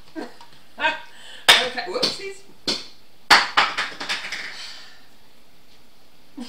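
Two sharp knocks from handling the blender jar and lid, about two seconds apart, with short bursts of a woman's voice without words in between.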